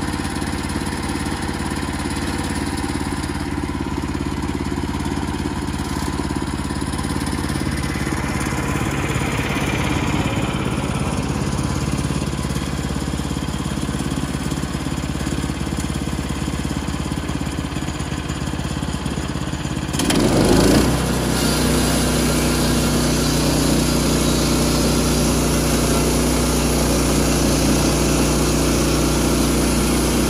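The gas engine of a Woodland Mills portable bandsaw mill runs steadily at low speed. About two-thirds of the way in it is revved up sharply and then runs louder and higher at cutting speed, ready to take a board off the log.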